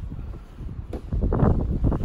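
Wind rumbling on the microphone, with a single sharp click about a second in.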